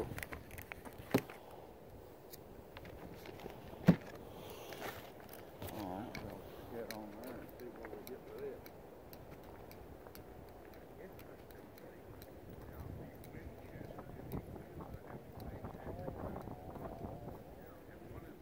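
Faint, distant talking with scattered small clicks and knocks of things being handled close to the microphone. There is one sharp knock about four seconds in.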